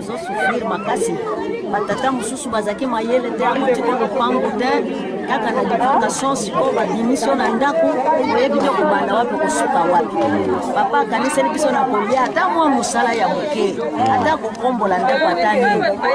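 Speech only: a woman talking, with other voices chattering around her throughout.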